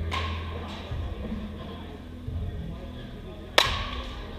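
A bat strikes a pitched ball twice in a batting cage: a crack right at the start and a louder one about three and a half seconds in, each with a short echo. Background music and voices murmur under the hits.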